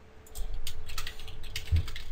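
Typing on a computer keyboard: a quick run of keystrokes starting about half a second in, with one heavier thud near the end.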